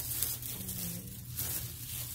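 A clear plastic wrapper crinkling and rustling as a large stretched canvas is pulled out of it, with louder rustles near the start and about a second and a half in.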